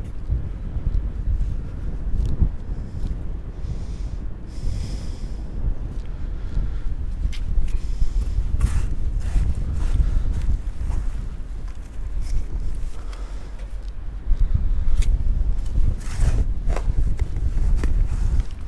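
Wind buffeting the microphone throughout, with several sharp crunching strokes of a long-handled sand scoop digging into wet beach sand, mostly about halfway through and again near the end.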